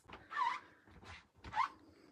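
Two short, soft scraping rubs, one about half a second in and a smaller one near the end, as rubber stamps are handled and wiped on the craft table.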